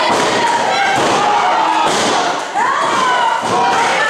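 Thuds on a wrestling ring's canvas mat, with spectators shouting over them and a loud rising yell about two and a half seconds in.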